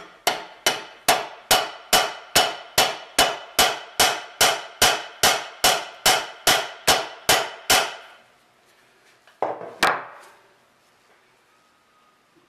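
A hammer tapping a steel rod in a steady run of about nineteen light metallic strikes, a little over two a second, each with a short ring, driving a new Woodruff key into the outboard's shaft keyway. The tapping stops about eight seconds in, and two louder knocks follow near ten seconds.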